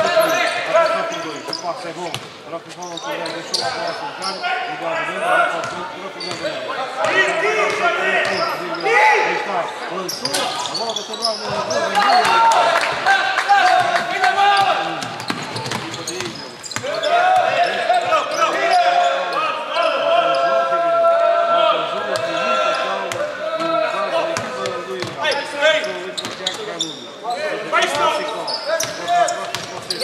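A basketball bouncing on a hardwood court during live play, mixed with voices calling out, echoing in a large sports hall.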